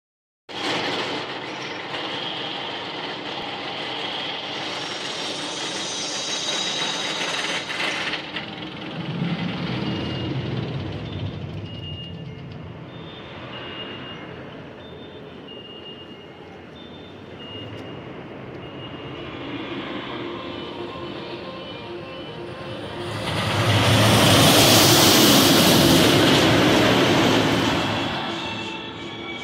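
Steel Vengeance hybrid roller coaster train running along its steel track on a wooden structure, a rumble that rises and falls, then grows much louder as the train passes close about four seconds before the end and dies away.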